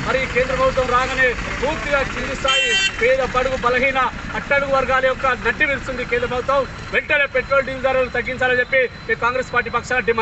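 A man speaking Telugu without pause, with street traffic behind him and a brief shrill tone about two and a half seconds in.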